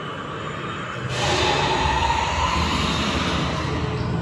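Amusement-ride car running along its track, a steady rumble. About a second in a loud hiss joins it, with a faint whine over it.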